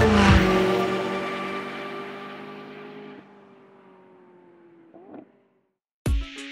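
McLaren 675LT's twin-turbo V8 engine note fading as the car pulls away, its pitch drifting slightly lower as it dies out over several seconds.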